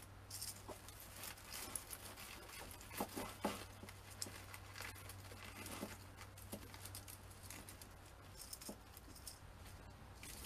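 Faint rustling and crackling of artificial pine needles and berry picks being handled and pushed into greenery, with a couple of light knocks about three seconds in. A low steady hum runs underneath.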